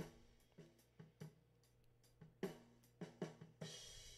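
Recorded drum kit played back faintly through its two overhead microphone tracks, cymbals and drums hitting in a steady beat. The overheads have been pulled down 3 dB and no longer clip.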